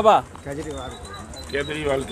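A pigeon cooing softly, a low murmuring call, after a brief spoken word at the start.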